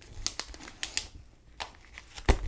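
Clear plastic page sleeves in a ring-binder sticker album rustling and crinkling as they are flipped, with a scatter of short light clicks, about half a dozen spread across the moment.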